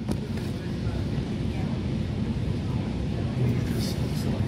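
Steady low rumble of a Class 345 Aventra electric train standing at an underground platform with its equipment running, just before it pulls away.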